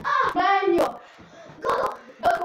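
A child's voice making wordless sing-song sounds in two short stretches, with a sharp hit a little before the middle.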